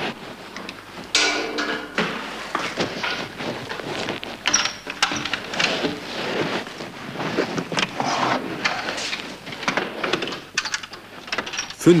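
Rustling and knocking handling noise from the bag that hides the camera, with a wooden office wardrobe door being opened partway through.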